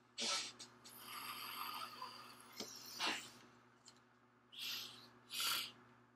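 Close breath sounds from someone smoking a joint: a long hissing draw on the roach with a faint whistle in it, then two short puffs of exhaled breath near the end.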